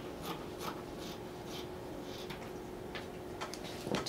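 Fabric scissors cutting through cotton Ankara cloth: a run of short, soft snips at an uneven pace.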